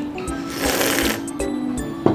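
A person slurping ramen noodles: one noisy, hissing slurp lasting about half a second, in the middle, over background music with a steady beat.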